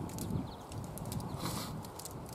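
Low background rumble with scattered small clicks and a brief rustle about one and a half seconds in.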